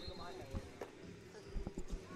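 Dull thumps of wrestlers' feet and bodies on a foam mat, a single one about half a second in and a quick cluster near the end, over faint voices.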